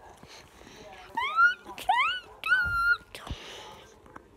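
Three high-pitched squeals from a child's voice, starting about a second in: the first two rise quickly in pitch, and the third rises and then holds level for about half a second.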